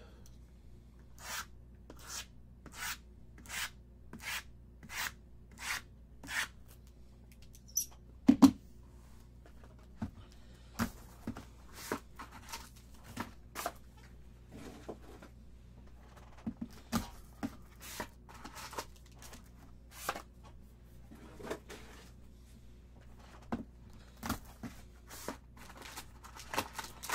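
A sealed trading-card hobby box being unwrapped and opened by hand. It begins with a quick run of evenly spaced short scrapes. A loud knock comes about eight seconds in, followed by scattered tearing, rustling and light clicks of wrap and cardboard.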